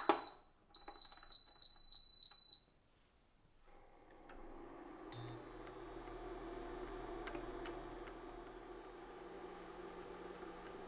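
An enamel saucepan knocks down onto an induction cooktop, then the cooktop gives a short run of quick high beeps, about four a second, as its power dial is turned up. After a short pause, a steady low hum from the cooktop runs under a silicone whisk stirring lemon curd mixture in the pan.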